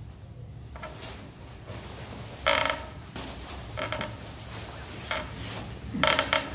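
Clothing and bag handling: a few short rustles and scrapes as a nylon jacket is pulled on and a sports bag is rummaged. The loudest comes about two and a half seconds in.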